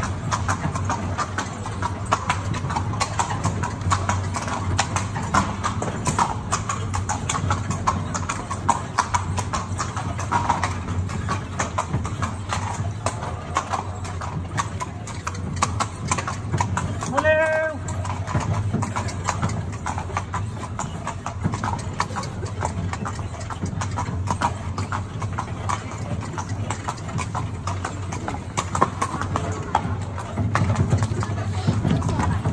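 Horse's hooves clip-clopping steadily on stone paving, pulling a carriage whose wheels roll along beneath.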